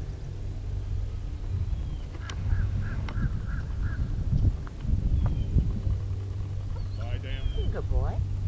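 Outdoor field ambience: a steady low rumble with a run of about six short, evenly spaced high calls a couple of seconds in, and faint voices near the end.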